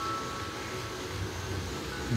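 Bicycle tyres spinning on rollers: a steady whir with a low hum underneath and a faint high tone through the first half.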